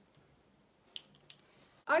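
A few faint clicks and light taps from small objects being handled, spread over the first second and a half; a woman starts speaking right at the end.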